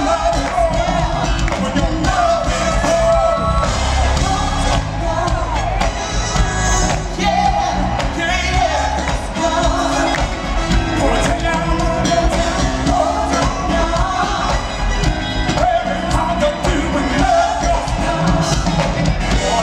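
Live R&B band playing while a male lead vocalist sings through a handheld microphone, backed by electric bass, drums and keyboards.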